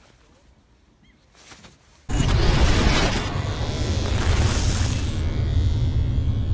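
Quiet at first. About two seconds in, a sudden deep boom opens a loud rumbling, whooshing cinematic sound effect with music: the sting of an animated title sequence.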